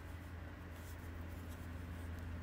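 Faint rustling and light clicks of wooden knitting needles and yarn as stitches are knitted, over a steady low hum.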